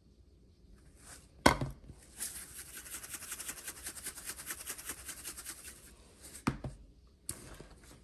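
Coarse ground black pepper shaken from a plastic shaker bottle over raw vegetables: a sharp click, a few seconds of quick, even rattling as the pepper is shaken out, then two more clicks near the end.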